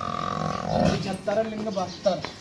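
A drawn-out animal call lasting about a second, followed by a man's voice.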